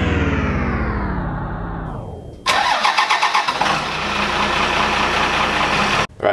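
A loud pitched sound falls steadily in pitch for the first two seconds or so. Then, about two and a half seconds in, an engine starts up suddenly and keeps running with a steady, pulsing beat.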